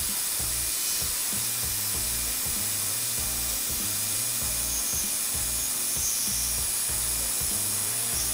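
Metal lathe running, its cutting tool facing the end of a brass bar, with a steady whir and cutting hiss. A steady background music beat pulses low underneath.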